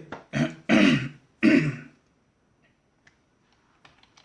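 A person clearing their throat, three loud bursts in the first two seconds, followed by a few faint clicks.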